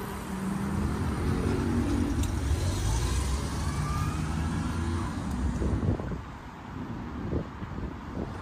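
A motor vehicle passing on the road alongside: a low engine rumble that builds and then fades away about six seconds in.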